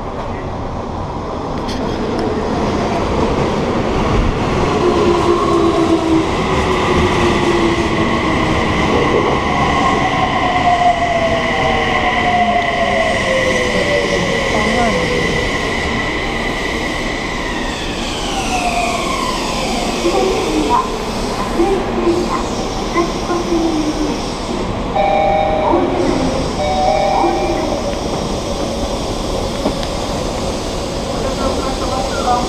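Subway train pulling into the platform: a steady high whine from the train's motors falls in pitch as it brakes to a stop just past the middle. Near the end come several short, repeated chime tones as the train stands at the platform.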